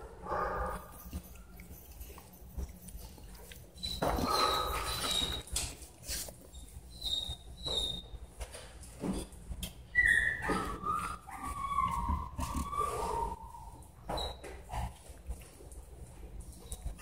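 Dog whining in short high-pitched whimpers, the longest one about ten seconds in and sliding down in pitch over a few seconds, with soft rustling in between.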